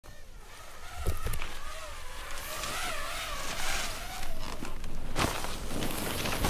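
A snowboard riding and carving through powder snow, a rushing hiss of board and snow spray that builds, with sharp thumps about a second in and just after five seconds. A long wavering high tone runs through the middle.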